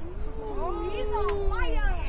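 Several children's voices together in one long, wordless drawn-out "ooh", gliding up and down in pitch and dying away near the end.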